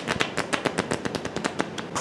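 A deck of playing cards riffled with the thumb, the bent cards flicking off one after another in a rapid, even run of clicks.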